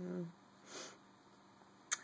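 A short voiced 'uh' at the start, then a single sniff a little under a second in, and a quick intake of breath just before speech resumes near the end.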